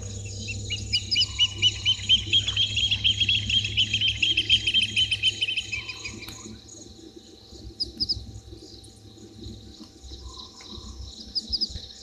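A bird calling at night: a fast run of short piping notes, about six a second, lasting some five seconds and sinking a little in pitch at the end, with a couple of brief higher calls later. Crickets trill steadily underneath.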